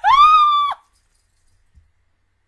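A woman's high-pitched excited squeal that rises in pitch, holds briefly and cuts off after under a second.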